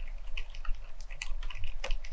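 Typing on an FL.ESPORTS CMK75 mechanical keyboard fitted with silent Lime switches and fully lubricated: muted keystrokes in a steady run, about five a second, with one sharper keystroke near the end.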